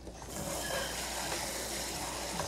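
Sliced mushrooms sizzling hard in hot olive oil in a frying pan, a steady hiss that starts a fraction of a second in. The pan is running too hot with plenty of oil.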